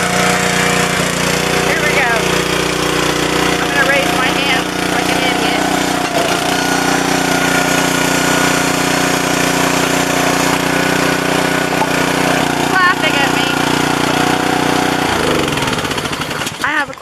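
A small petrol engine running loudly at a steady speed, then shutting off about fifteen seconds in.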